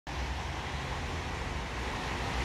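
Steady background rumble and hiss with no distinct event, typical of wind on the microphone or distant traffic.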